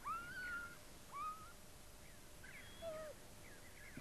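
Tibetan wild dog (dhole) giving high, thin whining calls: a long one that rises and then holds just after the start, a shorter rising one about a second in, and a lower, falling one near the end.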